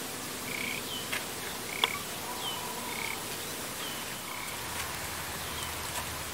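Frogs calling in a rice paddy: short calls about once a second, alternating a brief lower note with a higher hooked chirp, over a steady hiss of field ambience. One sharp tick just before two seconds in is the loudest sound.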